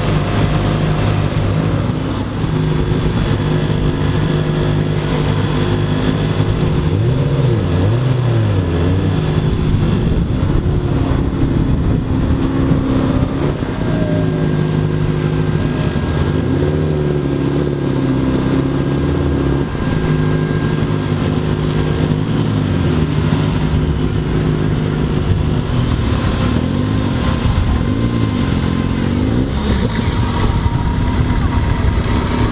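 Several high-performance car engines idling and revving as the cars drive off one after another. Their pitch rises and falls in repeated sweeps over a steady engine drone.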